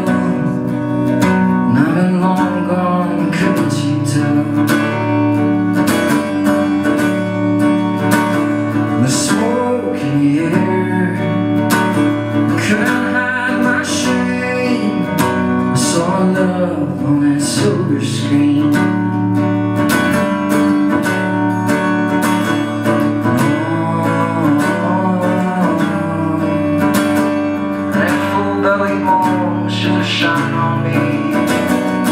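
Live solo performance: a steadily strummed acoustic guitar with a man singing over it.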